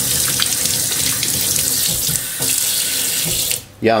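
Kitchen faucet running into a stainless steel sink, the stream splashing over a hand held under it. The water shuts off suddenly about three and a half seconds in.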